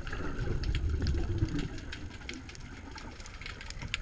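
Underwater sound picked up through a camera housing: a dense, irregular crackle of sharp clicks, with a low rumble that swells in the first second and a half and then eases.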